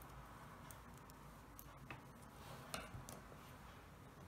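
Near silence with a few faint, irregular clicks of metal double-pointed knitting needles being handled.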